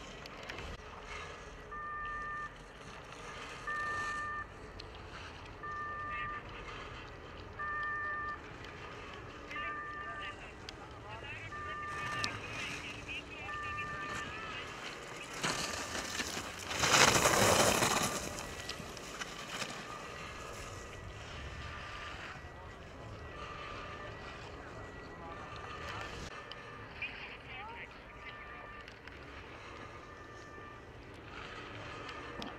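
Ski edges carving and scraping across hard-packed snow as a giant slalom racer passes close by, loudest for about two seconds halfway through. A short electronic beep repeats about every two seconds through the first half.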